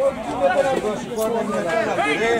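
Several men's voices talking and calling out over one another, the players on the pitch.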